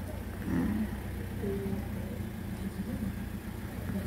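Small box truck's engine idling, a steady low hum.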